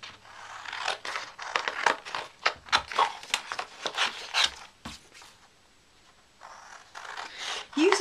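Scissors cutting a paper template: a quick series of sharp snips with some paper rustling, stopping about five seconds in.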